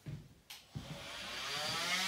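A handheld power tool's electric motor starting with a click about half a second in, then winding up, rising in pitch and growing louder into a steady buzz.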